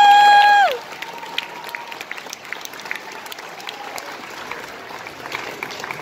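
A student string orchestra holds its final note, which cuts off just under a second in, and the audience then applauds steadily.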